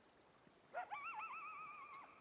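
A coyote howling: one call that begins about three-quarters of a second in, rises in pitch and then wavers up and down.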